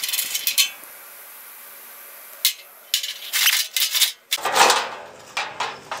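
Metal clinks and scrapes of a wrench working a nut and washers on a bolt through the steel panel of an old DC welder. A few sharp clicks come at the start, then a pause, then a run of clicks from about three seconds in, and a louder clatter in the last second and a half.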